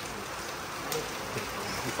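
Steady rain falling, an even hiss, with a faint click about a second in.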